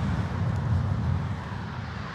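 Loud, steady low rumble of road traffic echoing under a highway overpass, a little louder in the first second.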